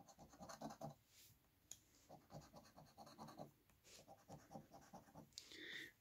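A coin scratching the coating off the bonus spots of a scratch-off lottery ticket, faint, in several bursts of short quick strokes with brief pauses between them.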